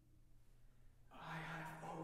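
Small a cappella vocal ensemble: after the previous chord fades to near quiet, voices come back in about a second later with a breathy attack over a low held note.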